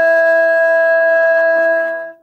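Music: a wind instrument holding one long, steady note at the end of a short melodic phrase.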